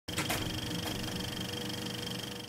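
Intro sound effect under a studio logo: a steady mechanical whirr with a fine, fast ticking and a high steady tone, with a few faint clicks in the first second.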